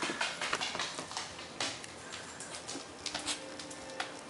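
Corgi's claws clicking on a tile floor as the dog runs, a quick irregular run of light clicks.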